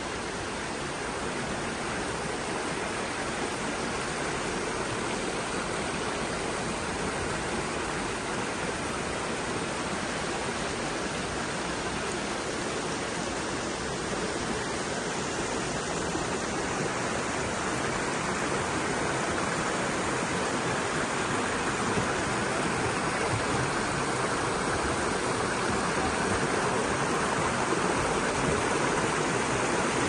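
Water falling down a stone rock-garden cascade into a pond, a steady rushing that grows a little louder in the last several seconds.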